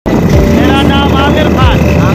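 Loud noise of a moving open passenger vehicle, engine and wind rumble, with men's voices over it.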